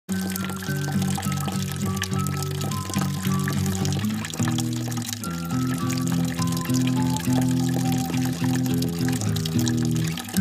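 Background music with a stepping melody, over the light trickle of red wine running from a plastic spigot into a bucket.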